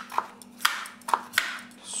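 Kitchen knife cutting raw potato into long fries on a wooden cutting board: four sharp knocks of the blade onto the board over about a second and a half.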